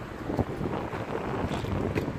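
Wind buffeting the microphone in uneven gusts, louder from about half a second in.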